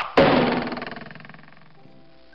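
An editing sound effect: a sharp hit, then a loud noisy burst that fades away over about a second and a half. Light background music comes back near the end.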